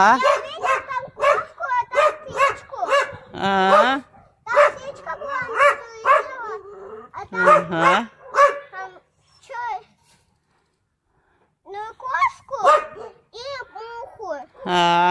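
A dog barking over and over in short barks, falling quiet for about two seconds a little after the middle, then barking again.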